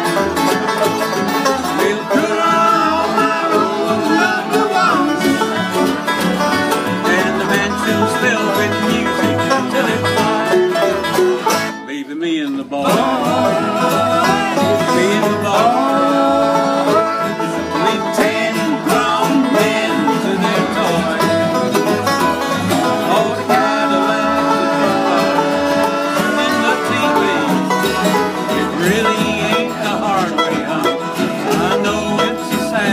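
Live bluegrass-style tune on resonator five-string banjo, plucked upright double bass and acoustic guitar, with the banjo rolling over a steady bass pulse. The band briefly thins out about twelve seconds in, then picks up again.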